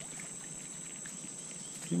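Steady high-pitched insect chirring, cricket-like, over faint background hiss. A man's voice begins at the very end.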